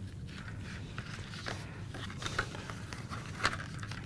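Poster board being folded and creased by hand: soft, scattered rustles and crackles of the stiff card.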